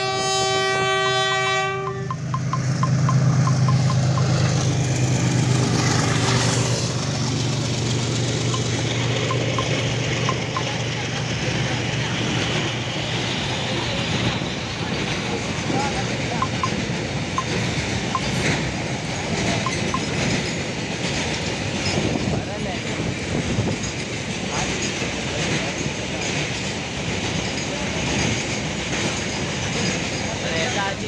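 Locomotive horn sounding for about two seconds, then the locomotive and a long freight train of tank-container wagons rolling past at speed: a steady rumble of wheels on rail with clickety-clack from the wheels over the rail joints, loudest as the locomotive goes by.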